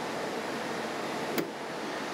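Car fuel filler being closed after refuelling: one sharp click about one and a half seconds in, over a steady background hiss.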